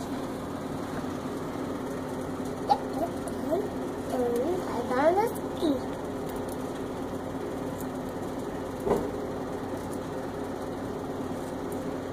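A toddler's wordless babbling and short rising squeals in the middle, over a steady low hum; two single light knocks, one before and one after the squeals.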